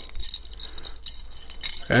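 Light metallic jingling and clinking of neck chains and stone-set pendants shifting against each other as a hand handles them.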